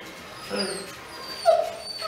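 Dog whining in thin high tones, with a short, louder cry about one and a half seconds in.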